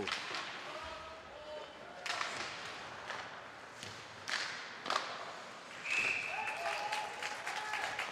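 Live ice hockey rink sound: sharp stick-and-puck knocks against the ice and boards, three of them in the middle, over the general noise of skating and a small crowd.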